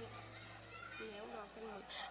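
Faint voices in the background, with a low hum that stops about a second in.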